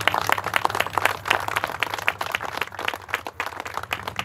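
A small group of people applauding: many separate hand claps, dense and uneven.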